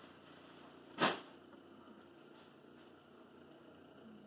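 Faint room tone with a single short, hissy whoosh about a second in.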